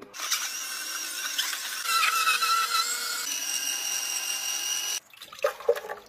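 Electric juicer's motor running with a steady whine while whole fruit feeds down its chute; the whine shifts in pitch about three seconds in and cuts off suddenly about five seconds in, followed by a few small clicks.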